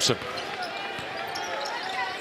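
Steady arena crowd noise with a basketball being dribbled on the hardwood court: a sharp bounce about a second in and another near the end.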